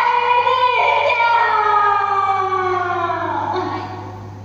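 A woman's voice singing in Vietnamese tuồng style: a held note that breaks about a second in, then one long note that slides steadily downward and dies away just before the end, over a steady low hum.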